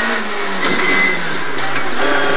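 Citroën Saxo rally car's engine heard from inside the cabin, its note falling steadily as the car slows in second gear for a hairpin.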